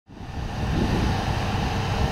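Wind buffeting the microphone outdoors: a steady, rumbling rush, heaviest in the lows, fading in at the start.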